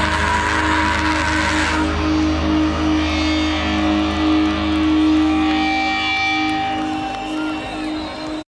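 Metal band's live sound at the end of a song: a loud full-band crash for the first two seconds, then held electric guitar notes ringing out over a low bass drone that stops about five and a half seconds in.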